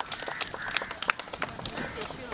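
A small group clapping irregularly, sharp separate claps rather than steady applause, with voices talking and calling out underneath.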